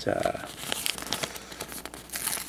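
Paper sticker sheet crinkling in the hands while a sticker is picked and peeled off its backing, a run of small scattered crackles.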